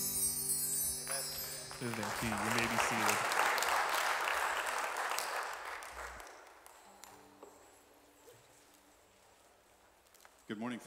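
The band's last chord fades out, then the congregation applauds for a few seconds, and a voice is briefly heard over the clapping. The applause dies away about six seconds in, leaving faint room tone.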